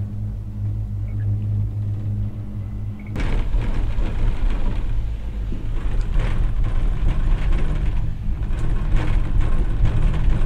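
Gondola cable car cabin riding the haul rope: a steady low hum, then about three seconds in a sudden, louder rumbling clatter that goes on as the cabin rolls past a tower's sheaves.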